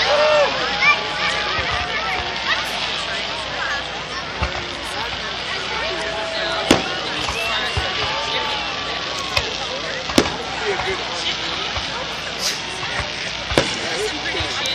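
Crowd of spectators talking and calling out over one another, with several sharp bangs from aerial fireworks shells bursting, the loudest about halfway through and again a few seconds later.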